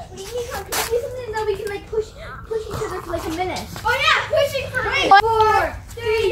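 Several boys shouting and yelling over one another, their voices rising and falling in pitch as they play rough.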